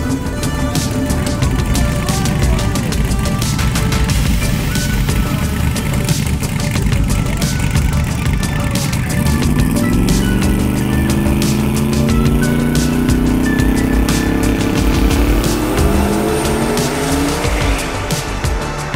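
Drag race engines with background music. About halfway through, a drag car's engine revs up, its pitch climbing over several seconds as it accelerates down the strip.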